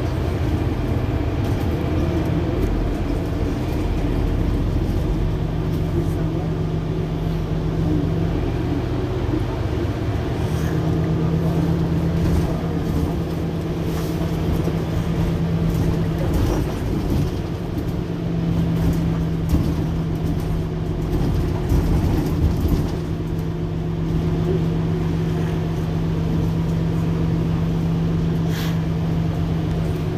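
Mercedes-Benz Citaro C2 Hybrid city bus standing at a stop with its engine idling: a steady low hum with a constant drone that drops out briefly a couple of times.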